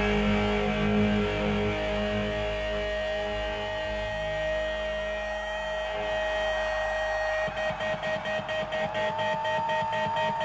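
Live distorted electric guitar chord ringing out and slowly fading, with a steady sustained tone held over it; about seven and a half seconds in, a fast, even pulsing starts up.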